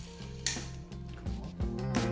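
Background music with one sharp plastic click about half a second in, from a toy-car track's rubber-band launcher being worked by hand.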